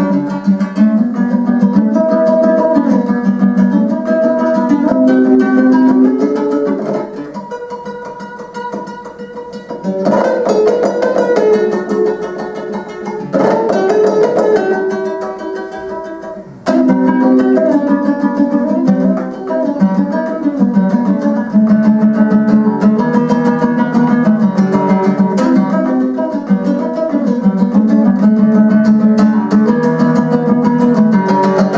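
Kazakh dombra played solo: a küy, strummed rapidly with the right hand in a driving rhythm. It softens twice in the middle and comes back at full strength a little past halfway.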